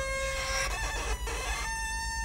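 Fiddle music: held notes stepping from one pitch to the next, with rough, scratchy stretches between them near the start and in the middle.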